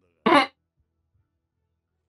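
A single short, loud throat clear from a man, about a quarter second long.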